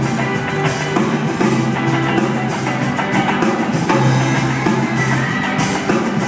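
Live rock band playing through the PA of a large theatre: drum kit and guitars over a steady low bass line, heard from the audience.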